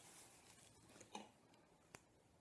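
Near silence: room tone, with a faint short sound about a second in and a small click near the end.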